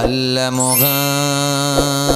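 Man singing a Bengali Islamic gazal into a microphone, drawing out one long held note that steps up in pitch a little under a second in.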